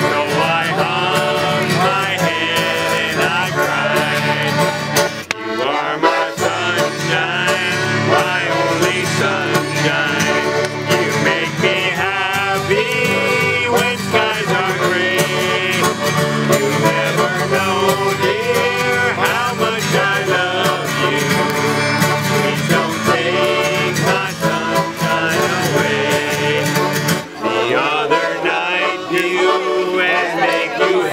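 Acoustic guitar strummed together with a button accordion, with two men singing a country-style song. Near the end the guitar's low strumming drops away, leaving accordion and voices.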